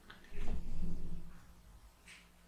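Handling noise from a power bank and magnetic USB charging cable being handled close to the microphone: a dull knocking and rubbing lasting about a second, starting shortly after the beginning.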